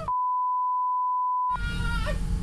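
Censor bleep: a single steady beep at one pitch, with all other sound cut out beneath it. It stops after about a second and a half, and the low rumble of the bus interior and background music come back.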